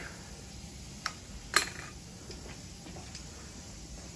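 Two sharp clicks, about a second and a second and a half in, the second louder, from the plastic fittings of dental suction hoses being handled, over faint steady room noise.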